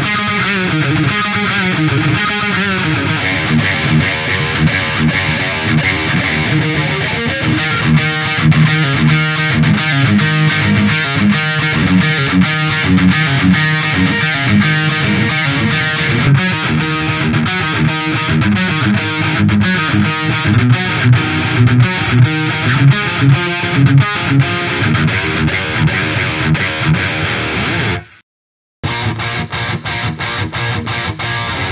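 Distorted electric guitar playing a chugging metal riff through a Fulltone OCD into a Ceriatone Gargoyle tube head. The first half goes through a custom cabinet impulse response; from about halfway in, it comes from a miked Celestion Vintage 30 cabinet with a graphic EQ on. Near the end the playing stops for about a second, then starts again.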